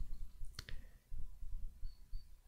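Two short, sharp clicks about half a second in, a fraction of a second apart, over a faint low rumble.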